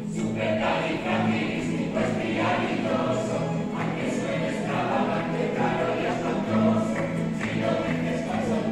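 A plucked-string orchestra of mandolin-type instruments and guitars playing a tune, with voices singing along.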